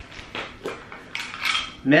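Small hard containers clinking and rattling against each other as a hand rummages through a packed cosmetic bag, a string of sharp clicks over about two seconds.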